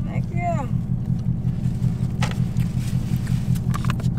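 Steady low drone of a parked car idling, heard from inside the cabin, with a single faint click about halfway through and a few more near the end.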